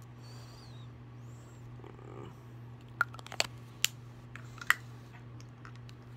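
A few sharp plastic clicks, about five between three and five seconds in, as lipstick tubes are handled, over a steady low hum.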